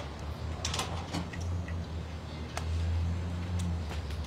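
Microphones being clipped and set onto a wooden podium: several short clicks and knocks over a low rumble that grows louder in the second half.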